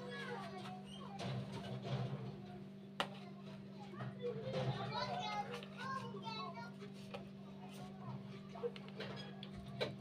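Faint children's voices talking and playing in the background over a steady low hum, with one sharp click about three seconds in.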